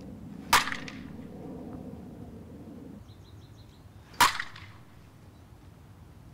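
Softball bat striking a tossed softball twice, about four seconds apart: two sharp cracks, each with a short ring.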